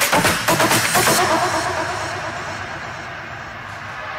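Electronic dance music with a steady kick-drum beat. About a second in, the beat drops out and the track thins to a quieter passage that begins to swell again near the end.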